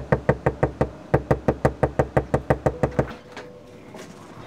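Rapid knocking on a front door, about six knocks a second with a short break about one second in, stopping about three seconds in.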